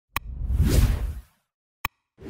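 Animated end-screen whoosh sound effect that swells and fades over about a second. A sharp click comes just before it and another near the end.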